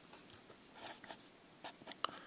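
Faint scratching of a pencil writing on paper, a few short strokes, more of them in the second half.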